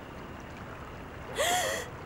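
A young woman crying: after a quiet stretch, one short, high, breathy sobbing gasp about one and a half seconds in.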